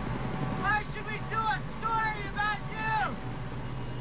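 Men's voices talking over the steady low drone of a helicopter in flight, heard from inside the cabin.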